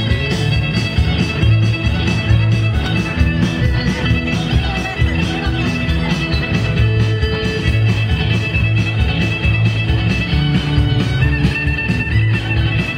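Live band playing, electric guitar over drums with a steady beat and sustained low bass notes.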